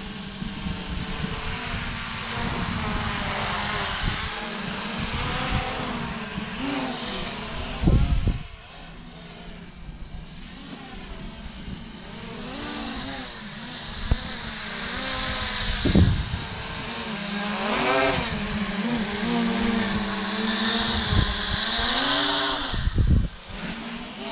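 MJX Bugs 3 quadcopter's brushless motors and propellers buzzing in flight, the pitch rising and falling as the throttle changes. Wind buffets the microphone, with a couple of short gusts.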